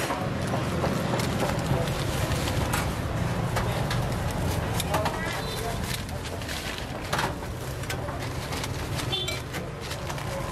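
Street-side food stall ambience: a steady low rumble of traffic with indistinct voices. Scattered short clicks and clinks come from the metal trays and tongs.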